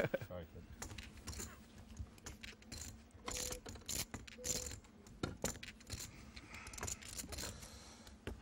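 Poker chips clicking and clattering at the table as players handle and shuffle them, in irregular runs of light clicks, with a short laugh at the start.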